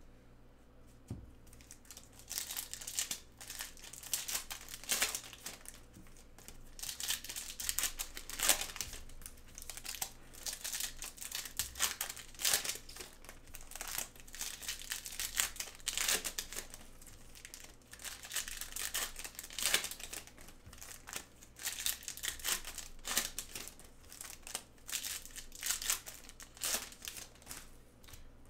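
Crinkling and rustling of trading cards and their packaging handled with nitrile-gloved hands, in quick irregular crackles that start about two seconds in.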